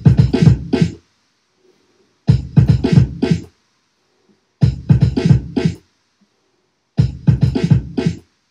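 Beat juggling on two turntables through a DJ mixer: a short drum-break phrase of about a second played four times, each one cut off by the crossfader, with about a second of silence between.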